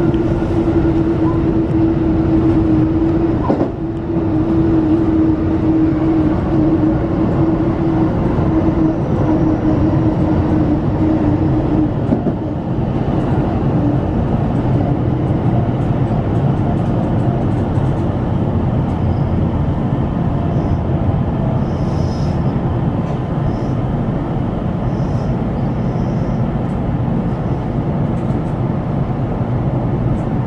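Electric train running along the track, heard from inside the driver's cab: a steady running rumble, with a steady hum over it that stops about twelve seconds in.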